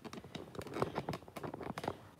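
Faint, irregular clicks and scratches of handling noise as the recording phone is moved about and the air fryer basket is handled.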